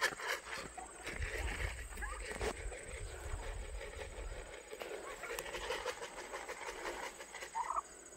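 White domestic turkeys following a walker, giving short soft calls, with a brighter burst of calls near the end. Scattered footsteps crunch on gravel, and a low rumble runs through the first few seconds.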